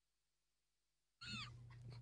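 Near silence: a second of dead air in the broadcast, then a faint steady hum comes in with a brief high gliding sound.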